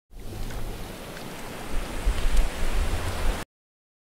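Rushing water noise like surf or a waterfall, with a deep rumble that swells in the second half, cutting off suddenly about three and a half seconds in.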